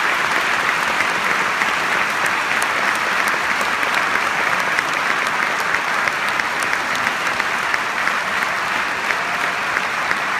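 Large concert-hall audience applauding steadily, a dense even patter of many hands clapping after a choral piece.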